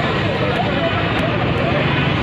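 Several voices talking over one another, half buried under a loud, steady rush of outdoor noise.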